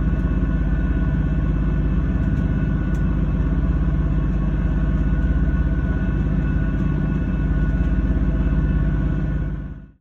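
A boat's engine running steadily at low speed, an even hum with a fine regular pulse, fading out at the very end.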